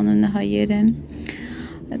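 Speech only: a voice speaking for about a second, then trailing into breathy, whispered sounds.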